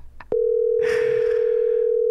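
Telephone ringback tone heard over the phone line as an outgoing call rings the other end: one steady, even ring that starts and stops sharply and lasts about two seconds.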